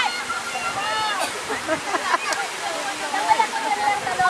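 Several people calling and shouting in high voices, with one long held call about three seconds in, over a steady rush of surf breaking on the beach.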